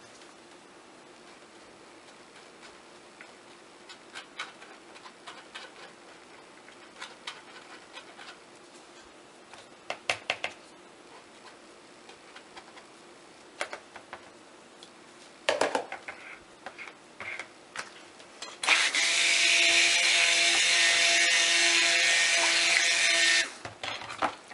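Handheld stick blender running for about five seconds near the end, a steady motor hum, mixing lye solution into the oils in a short burst just to emulsion and not to trace. Before it, a few scattered light taps and clinks of a metal strainer and utensils handled over the plastic bowl.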